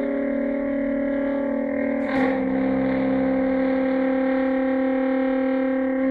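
Sustained drone of held, steady pitched tones from saxophone and electronically processed train sounds, with the lower notes shifting slightly down about two seconds in.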